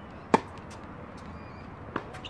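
Tennis ball struck by a racket: one sharp, loud pop about a third of a second in, then a fainter hit or bounce just before the end.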